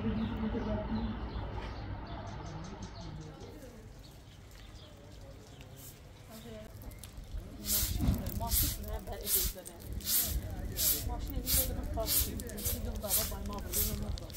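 Long straw broom sweeping a paved surface in brisk, regular swishing strokes, about one and a half a second, starting a little past halfway. Before that only a low, quiet rumble.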